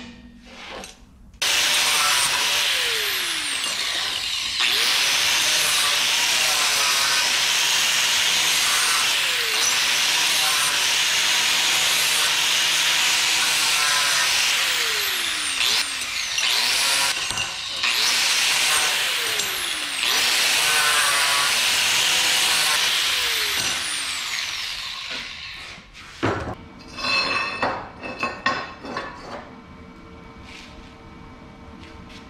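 Handheld angle grinder grinding the edges of small drilled steel plates. Its pitch sags repeatedly as it is pressed into the work, with short breaks between passes. It fades out about four seconds before the end, followed by a few knocks.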